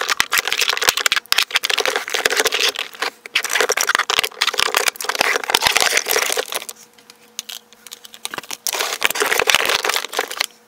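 Skincare jars and pots clicking and knocking against each other as they are set down and slid into rows in a drawer, with rattling from plastic organiser bins: a busy run of small knocks that eases off for a couple of seconds about two-thirds of the way through.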